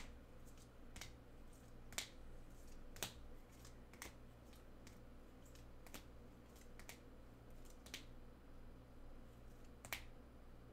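Rigid plastic top-loader card holders clicking faintly against one another as cards are flipped off a stack one at a time, a sharp click every second or two.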